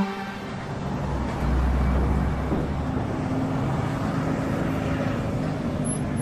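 A steady rumbling noise with no music, heaviest in the low end for about a second near the middle.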